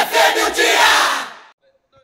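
Audience cheering and clapping with shouts at the end of a song, cut off abruptly about a second and a half in.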